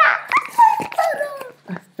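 A young girl's high-pitched squealing laughter: a string of short yelps falling in pitch, fading out about one and a half seconds in.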